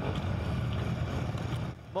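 Wind buffeting a handheld microphone outdoors: a steady low rumble with hiss that cuts off shortly before the end.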